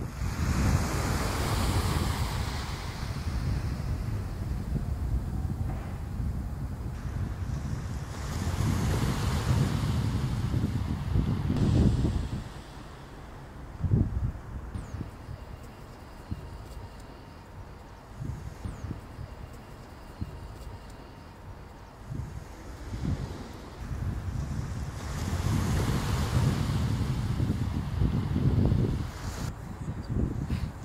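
Small waves washing up a sandy beach, surging three times: at the start, about eight seconds in, and about twenty-five seconds in. Heavy wind buffets the microphone throughout, with a low rumble in gusts.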